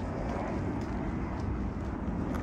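A steady low rumble of outdoor background noise, with faint footsteps on a dirt path.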